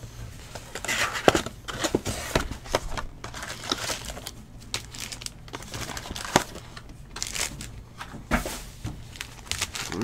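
Plastic shrink-wrap crinkling and tearing as a 2018-19 Panini Select Basketball hobby box is unwrapped and opened, with irregular rustles and sharp little clicks of cardboard and card packs being handled; the sharpest click comes about a second in.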